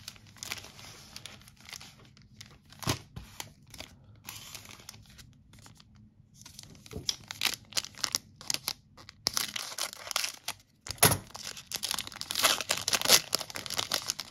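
Foil wrapper of a Panini Capstone baseball card pack crinkling and being torn open by hand. There is only faint fiddling with the wrapper at first, then louder crinkling from about halfway, with a sharp rip about eleven seconds in.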